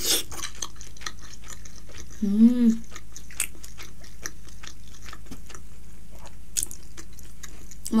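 Close-miked mouth sounds of a person biting into and chewing a steamed momo dumpling: soft wet clicks and smacks all through, with a brief hum about two and a half seconds in.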